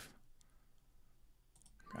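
A few faint computer mouse clicks, about half a second in and again near the end, as trading orders are placed and reversed, against otherwise near silence.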